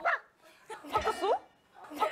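Young women's voices calling out short nonsense sound-words in a word game, in a few quick bursts of high, sliding syllables.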